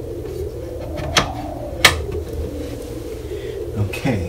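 Two sharp clicks about two-thirds of a second apart, the second the louder, as speaker cable connectors are handled and plugged back in. A steady low hum sits underneath.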